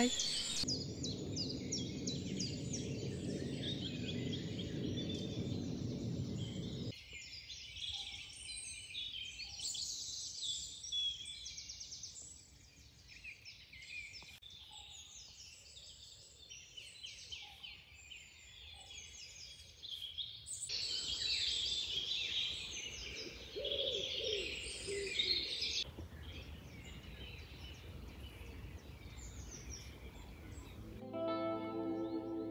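Dawn chorus in woodland: many songbirds singing at once in overlapping high chirps and trills, with a low steady rumble underneath for the first several seconds. The mix of birdsong changes abruptly twice, once early on and again about two-thirds of the way through.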